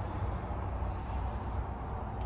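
Ford Maverick's 2.0-litre EcoBoost four-cylinder idling, a steady low hum heard from inside the cab.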